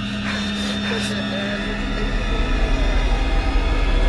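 Low, steady drone of a horror film score that swells louder through the second half, with a young man's mocking laugh about two seconds in.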